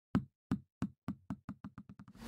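Bouncing-ball sound effect: about ten knocks that come faster and fainter, like a ball bouncing to rest.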